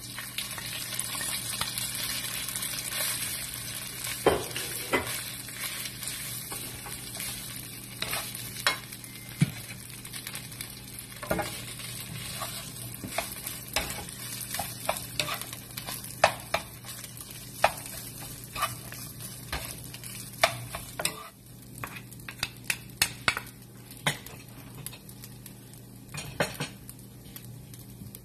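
Cooked rice and vegetables being stir-fried in oil in a nonstick pan. The sizzle is strongest in the first few seconds as the rice goes in, then settles under frequent irregular clicks and taps of wooden spatulas against the pan.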